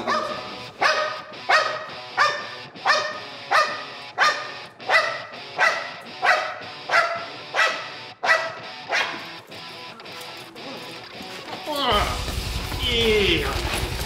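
A Malinois–bulldog mix barking at a bite sleeve held above it, in a steady rhythm of about three barks every two seconds, stopping about ten seconds in.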